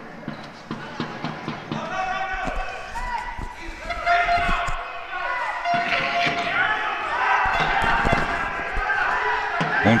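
A basketball being dribbled, bouncing again and again on the wooden floor of a sports hall during wheelchair basketball, with players calling out across the court.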